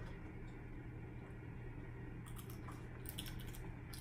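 Faint crunching of a tarantula leg being bitten and chewed: a few soft crackles about two and a half and three and a half seconds in, over a steady low room hum.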